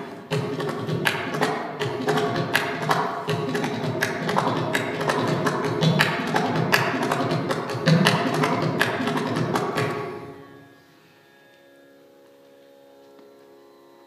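Mridangam played solo: a fast, dense run of strokes on both heads, mixing sharp ringing strokes with deep bass strokes. The playing stops about ten seconds in and the sound dies away, leaving only a faint steady drone.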